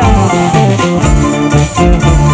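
Live band music for dancing: plucked strings over a steady bass line, with sliding higher notes.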